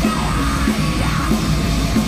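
Heavy metal band playing live: distorted electric guitars, bass and drums in a continuous fast riff.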